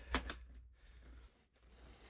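A couple of quick plastic clicks and taps as a trim piece is pressed onto a Porsche Panamera front door panel, shortly after the start, then faint handling.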